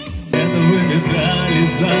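A patriotic song played through loudspeakers: a male voice singing into a microphone over a full instrumental accompaniment. About a third of a second in, the sound jumps abruptly louder from a quieter stretch with a steady beat.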